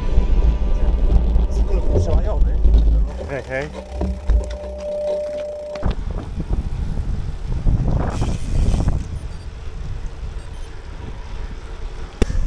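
Wind and riding noise on a bike-mounted action camera's microphone while cycling, heaviest in the first few seconds, with snatches of voices. The sound cuts off abruptly about six seconds in and picks up again more quietly.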